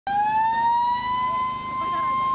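A loud, sustained, siren-like high tone that slides up in pitch over the first second and then holds steady, with faint voices beneath it.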